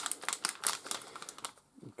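Thin plastic minifigure blind-bag packet crinkling and crackling in rapid clicks as it is squeezed and felt through, stopping about a second and a half in.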